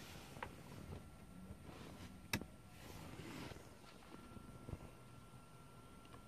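A single sharp click a little over two seconds in, an ELM327 OBD2 adapter's HS/MS CAN toggle switch being flipped to the high-speed (HS) position, among a few faint handling ticks over a quiet background with a faint steady high tone.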